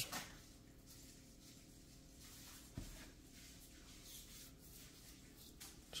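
Near silence: quiet room tone with a faint steady hum, broken by one soft low thump about three seconds in.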